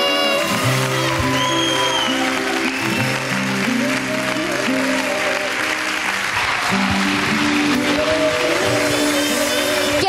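Studio audience applauding over the instrumental close of the backing track, after a child singer's held last note ends about half a second in.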